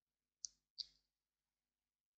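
Two short clicks of a computer mouse button, about a third of a second apart.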